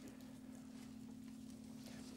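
Very quiet room tone with a steady low hum and a few faint soft ticks.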